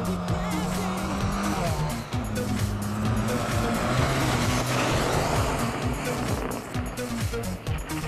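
A rally car's engine running hard under load, with tyre noise on the loose dirt course, loudest about halfway through, mixed with background music that has a steady beat.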